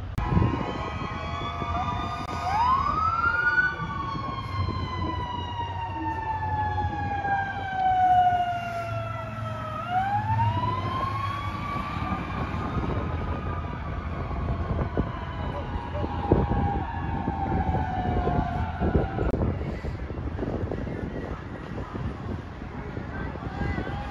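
Fire engine siren wailing. It rises quickly, then falls slowly over several seconds, and does this twice before fading out near the end. A low vehicle rumble and crowd chatter run underneath.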